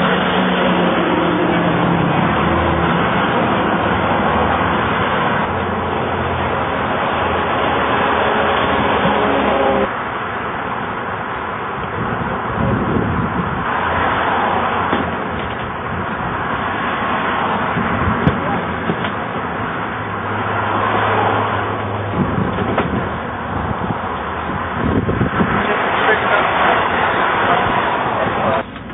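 A vehicle engine idling close by with steady outdoor traffic noise; the engine's hum drops away about ten seconds in, and faint voices are heard.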